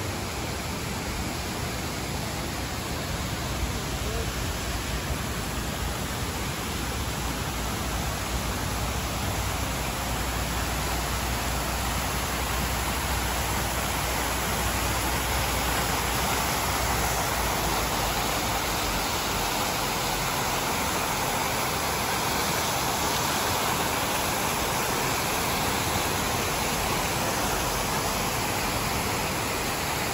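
Many jets of a large fountain splashing down into its basin: a steady rush of falling water. A low rumble sits under it for roughly the first half, then fades out.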